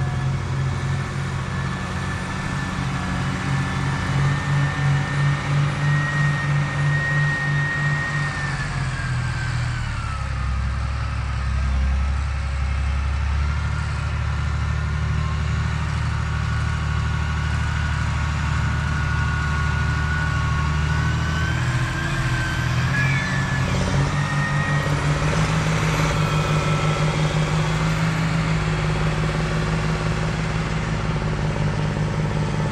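John Deere 8530 tractor's diesel engine running steadily under load while pulling an 11-shank V-ripper subsoiler. Its note drops about ten seconds in and picks back up a few seconds before the end, with a thin whine above it.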